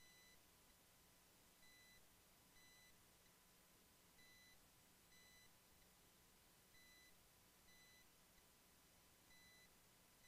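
Near silence broken by faint, short, high-pitched electronic beeps, about one a second and unevenly spaced.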